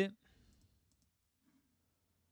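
A man's voice finishes a word, then near silence broken by a few faint clicks from someone working at a computer.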